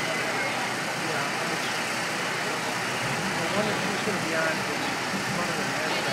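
Busy city street ambience: a steady wash of traffic noise with indistinct voices of people in the crowd.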